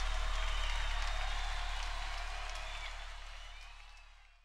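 Closing sound bed: a steady low drone under a soft, even wash of higher noise with a faint pulse, fading out over the last second or so.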